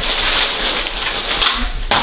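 Gift wrap and tissue paper rustling and crinkling close to the microphone, cutting off sharply just before the end.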